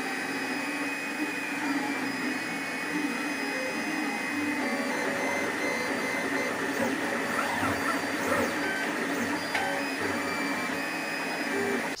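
FDM 3D printer printing a part: stepper motors whining in short tones that keep changing pitch as the print head moves, over a steady mechanical hum.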